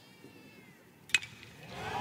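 A single sharp, ringing crack of a metal baseball bat meeting a fastball squarely, about a second in: solid contact that sends the ball deep for a home run. Crowd noise swells just after. Before the crack there is a faint high wavering call.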